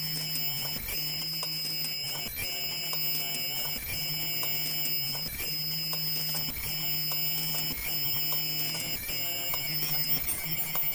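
Automatic KF94 3D mask-making machine running: a steady hum and high-pitched whine that drop out briefly about every second and a half as it cycles, with light mechanical clicks.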